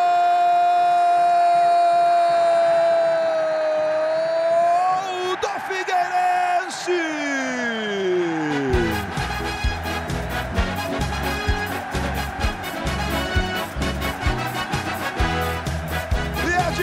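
A TV football commentator's long drawn-out goal cry, held on one note for about five seconds, then a falling glide. Music with a steady beat starts about nine seconds in.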